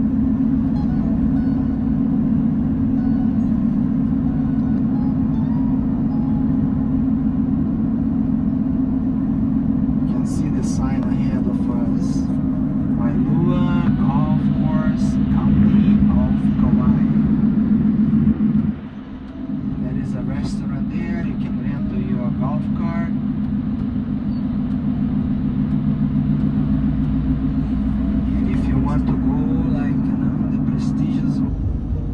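Car driving along a road, heard from inside the cabin: a steady low drone of engine and road noise that drops briefly about two-thirds of the way through.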